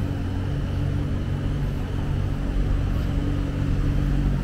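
Steady low hum of city street traffic and engines, with no distinct single event.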